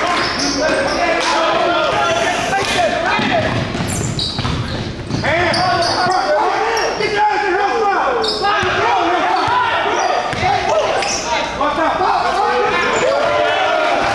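Basketball game in a gym: the ball bouncing on the hardwood court amid many overlapping crowd and player voices calling and shouting in the hall.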